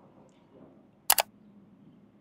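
Two sharp clicks in quick succession about a second in, made while eating a grilled lamb skewer, over faint restaurant room tone.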